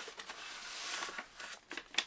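Paper rustling as folded posters are slid out of a kraft paper mailer envelope: a steady rustle for about the first second, then a few short crinkles and taps.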